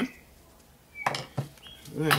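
A quiet second, then a short clatter of knocks about a second in as a screwdriver is set down on a wooden workbench. A brief high chirp, like a small bird's, comes just before the knocks.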